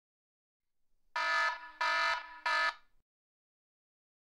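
Wrong-answer buzzer sound effect: three harsh buzzes in quick succession, signalling that an answer is incorrect.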